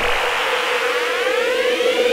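Synthesized intro sound effect: a held electronic tone under a rushing noise, with a whine that sweeps steadily upward from about halfway through, building up like a siren.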